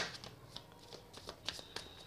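A deck of tarot cards being shuffled and handled by hand: a series of irregular soft snaps and clicks of card edges, the loudest right at the start.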